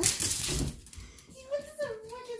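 Small dog scrambling and jumping about on a couch: a loud rustling, clinking burst in the first half-second, then a short high-pitched cry that bends in pitch near the end.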